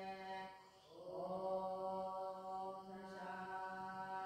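A voice chanting a Sanskrit mantra in long, steady held notes. The tone breaks for a breath just before a second in, then returns with a short upward slide and holds.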